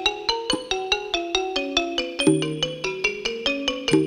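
Ranat ek, the Thai boat-shaped wooden-bar xylophone, played solo with two mallets in a rapid, steady stream of struck notes.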